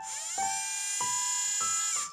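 A small robot's electric drive motors whining steadily as they spin up and run. A few rising notes of background music sound over them.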